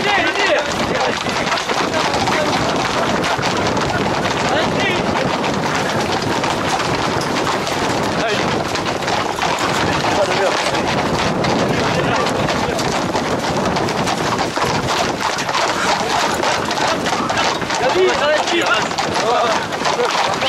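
Voices of a crowd of runners calling out over the massed clatter of many Camargue horses' hooves on a paved road, with wind on the microphone.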